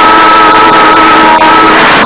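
Loud noise of a passing train, with a steady multi-note train horn that stops near the end.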